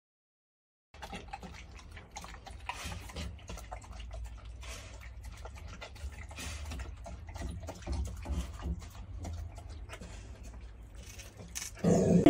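A dog lapping from a metal bowl: a faint run of small wet laps and clicks, starting about a second in, over a low steady hum.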